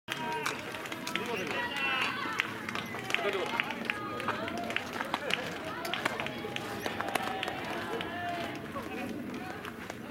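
Several players' voices calling out and chattering across an open baseball field, none of them close, with scattered sharp clicks.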